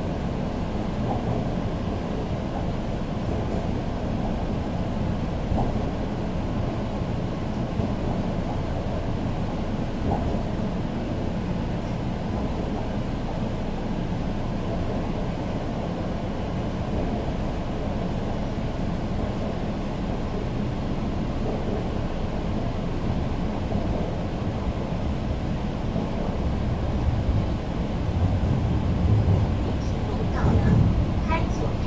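Shanghai Metro Line 4 subway train running, heard inside a passenger car as a steady low rumble, growing a little louder near the end.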